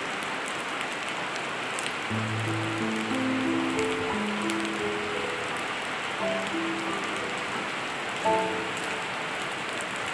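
Steady rain falling on wet pavement and roofs, an even hiss, with background music over it: a slow melody of held notes that comes in about two seconds in.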